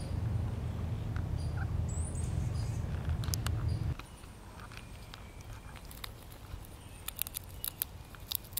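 A low rumble for about four seconds, with a faint high chirp about two seconds in. After a sudden drop to a quieter ground-level sound, a run of small sharp clicks and crackles comes near the end, from a chipmunk among dry leaves and peanut shells.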